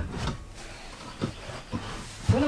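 A few faint knocks and rubbing as a dinette chair with a fold-out stool is handled and worked at its base.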